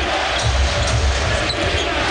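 Basketball being dribbled on a hardwood court, repeated low thuds under the steady noise of an arena crowd.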